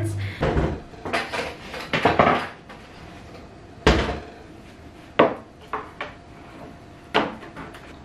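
Kitchen things being handled and set down on a wooden counter: a series of knocks and clatters of a cutting board, knife and lemons, the loudest a sharp thud about four seconds in.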